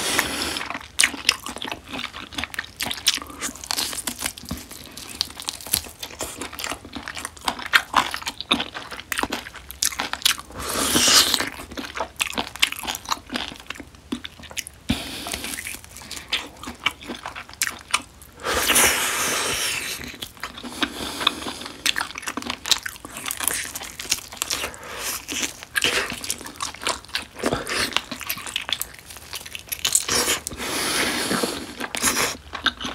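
Close-miked biting, tearing and chewing of marinated grilled beef short ribs (LA galbi) as the meat is pulled off the bone with the teeth: quick, irregular crunchy clicks, with a couple of longer noisy stretches, about a third of the way in and just past the middle.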